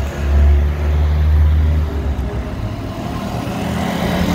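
A motor vehicle's engine running as it drives past, loudest in the first two seconds and then fading.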